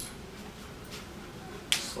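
Low room tone with faint movement, then one short, sharp, hissing click near the end.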